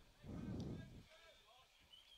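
A brief low rush of noise on the microphone, about a second long, over faint voices in the background.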